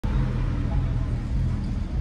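A steady low rumble of a motor vehicle, with a faint hum.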